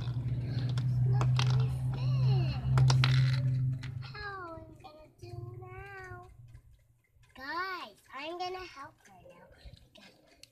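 Clicks from toys being handled over a steady low hum for the first four seconds or so. Then come several short, high, wordless vocal sounds, each rising and falling in pitch.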